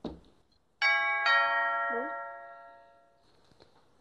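Two-note doorbell chime ringing once, ding-dong, the notes about half a second apart and the second dying away over about two seconds.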